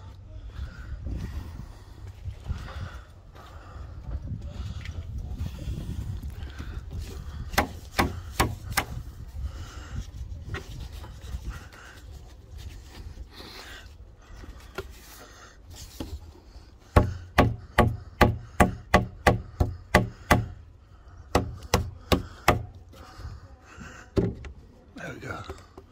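Hammer knocking a tanalised timber spar down into its notch in the pergola beam: a few scattered knocks, then a fast run of about a dozen sharp knocks, roughly three a second, over the second half, with a few more after. Before the hammering there is wood rubbing and handling noise over a low rumble.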